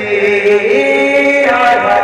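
A man singing an Odia devotional bhajan in chant-like long held notes, amplified through a microphone. A steady lower tone sounds beneath the voice.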